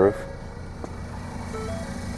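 Steady low hum of the 2014 Ford Focus's 2.0-litre four-cylinder engine idling, heard from inside the cabin, with a single short click a little under a second in.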